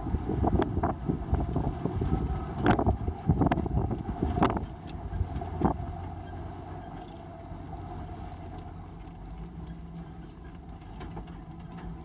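Vehicle engine running at low speed with a steady low drone, heard from inside the cab. A run of knocks and rattles comes in the first half, then the drive goes on more steadily.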